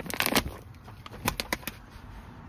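Handling noise as a fluffy plush bag is pushed into place on a van seat: a burst of rustling just after the start, then a few sharp clicks and knocks over about half a second.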